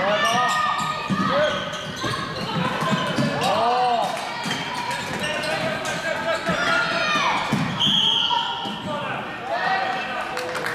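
Floorball game sounds in an echoing sports hall: many short squeaks of players' shoes on the court floor, scattered clicks of sticks and ball, and players' shouts. A short high steady tone sounds about eight seconds in.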